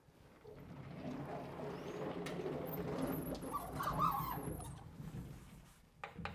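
Vertical sliding chalkboard panels being pushed along their tracks: a rolling rumble that builds up about a second in, is loudest around four seconds in with a few squeaks, and dies away near the end.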